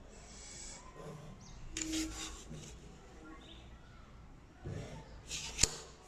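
Pencil strokes scratching along a plastic ruler on drawing paper, with plastic drafting tools sliding over the board between strokes. A sharp tap shortly before the end as a set square is put down on the board.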